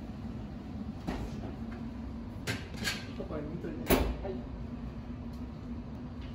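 A few sharp clicks and metal clunks, the loudest about four seconds in, as a tray of ramekins is put into a combi oven and its door is handled, over a steady low hum of kitchen equipment.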